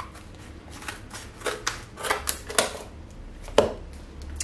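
Scissors snipping through cured expanding foam: a run of crisp, crunchy cuts in quick succession, then a single sharper click near the end.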